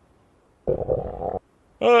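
A cartoon stomach-growl sound effect: one low, rough rumble lasting under a second, standing for the character's hunger.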